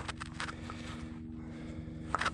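A few soft clicks and rustles of gloved fingers handling a freshly dug silver coin in the first half second, over a steady low hum.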